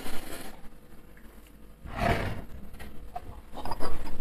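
A quiet room with a person's short breathy exhale about two seconds in, and a few faint small noises near the end.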